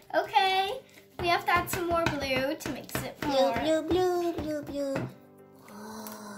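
A high-pitched, child-like voice vocalising without clear words for about five seconds, over background music. The voice stops near the end, leaving only the music.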